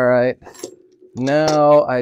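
A man speaking in a small workshop, with a brief light metallic clink between his words as a small hand tool is set down on the wooden bench.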